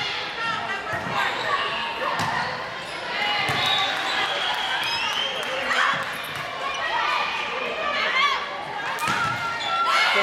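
A volleyball being struck several times during a rally in an echoing gymnasium, with sharp hits, the loudest about nine seconds in. Players' and spectators' voices run through the rally.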